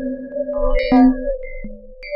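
Electronic music: a held synthesizer tone with short, higher pitched synth notes coming in over it from about half a second in.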